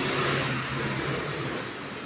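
Steady background noise in a small eatery: an even hiss with a low hum under it and no distinct events.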